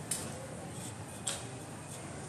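Two sharp clicks about a second apart over a low steady background hum of the surroundings.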